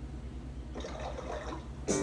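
A low steady hum with a faint hiss over it, then music with singing cutting in loudly just before the end.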